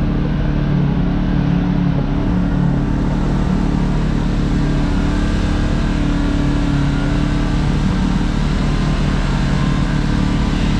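Kawasaki KRX side-by-side's parallel-twin engine running steadily under way on a dirt trail, heard from inside the open cab, holding an even pitch and level with no revving.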